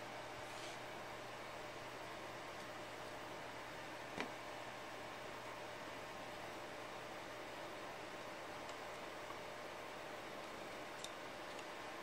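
Faint clicks and taps of plastic synthesizer keys being unlatched and slid off a metal keybed, over a steady low hiss and hum. One sharper click comes about four seconds in, and a few small ticks come near the end.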